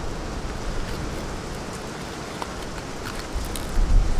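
Steady outdoor background hiss, with a low rumble building near the end.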